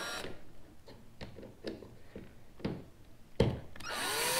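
A cordless drill/driver running for a moment as it snugs a screw into a kayak's plastic steering-control plate, stopping just after the start. After it, a few light, separate clicks and taps.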